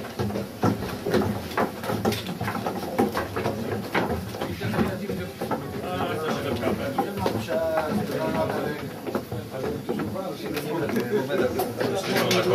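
Footsteps of several people walking down wooden stairs, many uneven knocks, with indistinct chatter from the group.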